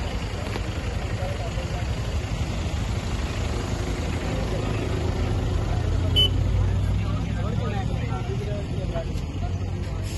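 A vehicle engine idling steadily, with indistinct voices of people talking around it. One short click comes about six seconds in.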